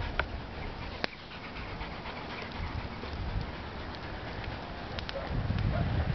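Australian Shepherd digging in loose soil with its front paws: irregular scraping and scattering of dirt, with a couple of sharp clicks in the first second.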